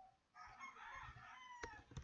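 A faint, drawn-out animal call. It starts about a third of a second in, lasts about a second and a half, and its pitch falls near the end. A single click sounds near the end.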